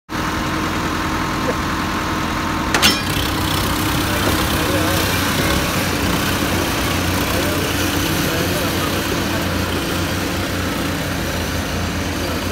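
Two diesel tractor engines, a Sonalika DI 750 and an Indofarm, running steadily under heavy load as they pull against each other in a tug-of-war, with crowd voices over them. A single sharp crack about three seconds in.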